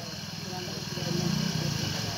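A small engine running steadily: a low drone with a fine, even pulse that grows a little louder about a second in.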